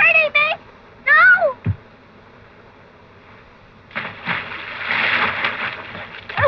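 Two short, high-pitched cries, a brief thud, then a splash of a body going into lake water about four seconds in, lasting about two seconds.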